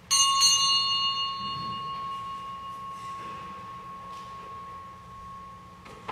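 A bell is struck at the start and rings on with one clear tone that slowly fades, its brighter overtones dying away within the first few seconds. It is rung as the priest enters to begin Mass, typical of a sacristy bell. A short knock comes right at the end.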